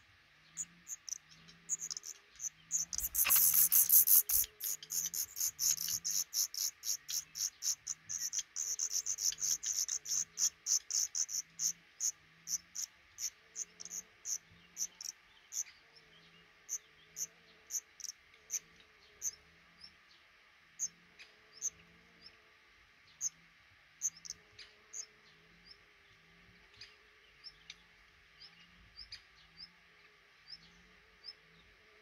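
Black redstart nestlings begging with thin, very high-pitched peeping calls. A dense, loudest burst comes about three seconds in, then the calls go on in a quick series that slowly thins to scattered single peeps.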